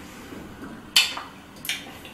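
Low room hiss with two brief mouth sounds, a short smack about a second in and a quick breath-like hiss near the end, from someone sucking on a sour candy ball.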